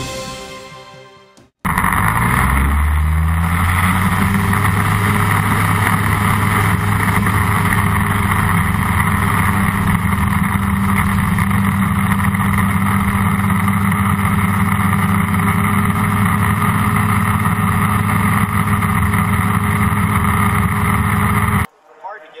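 Engine and propeller of a single-seat Airbike ultralight, recorded on board, coming up to high power: the pitch rises over about two seconds, then holds steady and loud until it cuts off abruptly just before the end. A short tail of theme music comes first.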